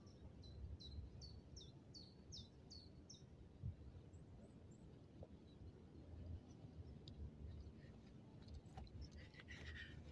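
A bird calling, a quick run of about seven short falling chirps over the first three seconds, against a near-silent outdoor background, with one faint low thud a little before four seconds in.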